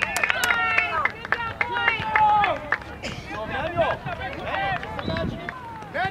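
Several people shouting and cheering at once, with some hand clapping in the first second. The long, high shouts die down after about two and a half seconds, leaving scattered quieter calls.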